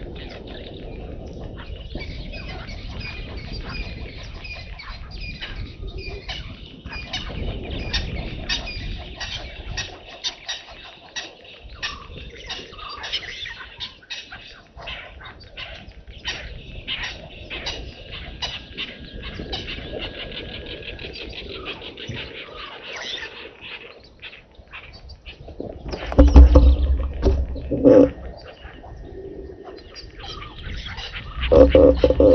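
Wild birds chirping and calling, many short chirps overlapping, with a low rumble for the first third. Near the end comes a loud, low sound in two bursts.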